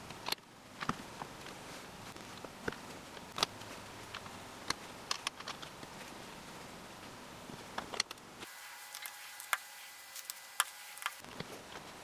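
LEGO bricks being handled and pressed onto plates: scattered sharp plastic clicks and light taps at irregular intervals over a faint hiss.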